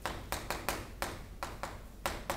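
Chalk tapping and clicking against a chalkboard while writing, a quick irregular series of about eight sharp taps.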